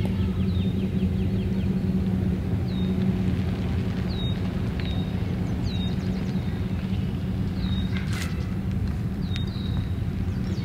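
Pickup truck engine running steadily at low speed while it slowly backs an Airstream travel trailer, with birds chirping over it every second or so and a single sharp click near the end.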